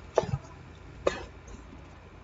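Two short, quiet coughs from a person, about a second apart.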